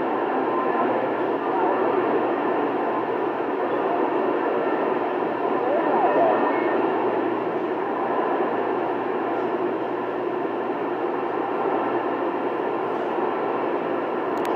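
CB radio receiver giving steady band static on an open channel. Faint, garbled distant signals warble now and then under the hiss.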